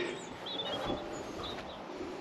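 Faint outdoor ambience with a few small, high bird chirps about half a second in and again later, after a short rush of noise at the very start.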